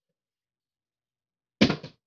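Plastic water bottle landing on a wooden dresser top about one and a half seconds in: one sharp knock followed quickly by two or three smaller knocks as it bounces or tips.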